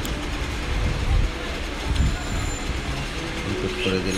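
Steady background rumble and hiss with no distinct event, under a screen-recorded narration.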